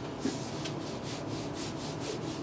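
Handwritten marker working being wiped off a writing board with a duster: quick back-and-forth rubbing strokes, about five a second.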